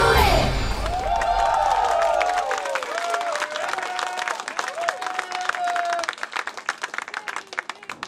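A live pop song with female vocals ends in its first half second, and a small theater audience takes over, cheering with shouted calls and clapping. The clapping grows sparser toward the end.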